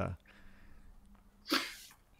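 A man's sentence ends, then a short, sharp breath noise about one and a half seconds in, lasting under half a second and fading.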